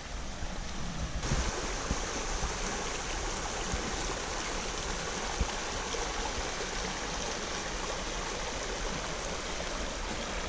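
Shallow, rocky forest creek running over stones in a riffle: a steady rush of water that turns fuller and brighter about a second in.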